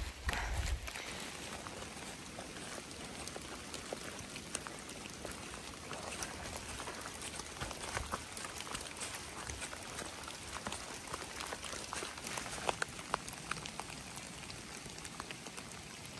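Steady rain falling in woods: an even hiss with many irregular small ticks of drops striking close to the microphone.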